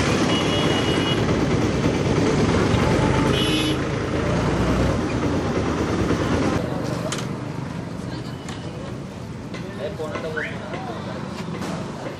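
Outdoor noise of a vehicle running close by with indistinct voices, dropping away about halfway through to quieter background chatter.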